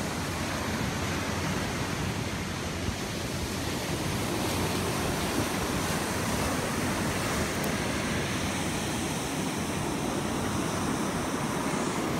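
Steady rushing noise of ocean surf and wind.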